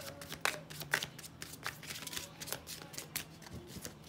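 A deck of tarot cards being shuffled by hand: a quick run of short card snaps and slides that thins out near the end.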